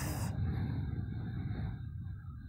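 A soft, slow exhale that fades away, over a steady low background hum.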